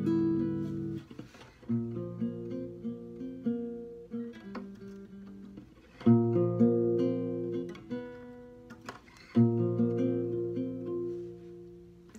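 Classical guitar played fingerstyle as a solo introduction to a song: plucked chords and melody notes in phrases, each opening with a strongly struck chord, about two, six and nine seconds in, that rings and fades.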